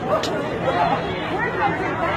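Indistinct chatter of a crowd, several people talking over each other with no single clear voice, and a brief click about a quarter second in.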